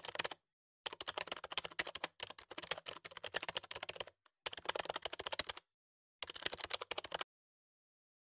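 Typing sound effect: rapid keyboard key clicks in several bursts with short pauses, stopping about seven seconds in.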